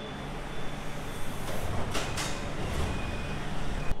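Subway train at an underground station platform: a steady rumble and hiss that grows slightly louder, with a few sharp clacks about halfway through.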